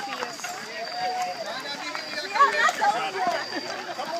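Several runners talking among themselves as they run, with the scattered footfalls of the group on the trail.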